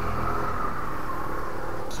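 A steady low mechanical hum with a faint whine that slowly falls in pitch.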